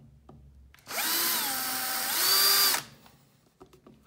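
Small electric drill with a 2 mm bit spinning up about a second in and drilling into the rim of a PVC sleeve for about two seconds. Its whine dips in pitch in the middle and rises again before it stops.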